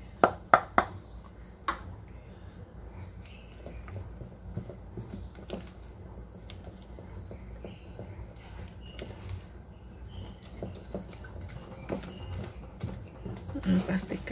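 A plastic measuring cup and spatula knocking sharply against a stainless steel bowl a few times in the first two seconds as flour is emptied in. Then a silicone spatula stirs thick cake batter in the bowl with faint soft scraping and ticking.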